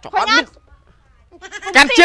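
Speech: a short spoken word, then from about one and a half seconds in a loud, high-pitched, wavering voice.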